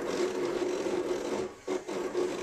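Cricut cutting machine whirring as its motors drive the blade carriage across the mat, with a brief pause about one and a half seconds in.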